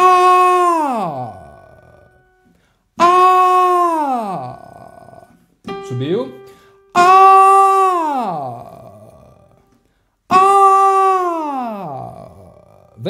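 A male voice singing an open 'ah' vowel four times, each held briefly on a higher note and then sliding steadily down into the low register. This is a vocal exercise for reaching low notes, pushing the voice downward from the top note.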